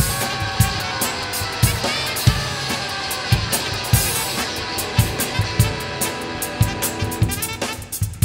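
Live band playing an instrumental passage: an electric guitar holds long lead notes that bend slightly in pitch, over a drum kit with a kick drum beating about twice a second.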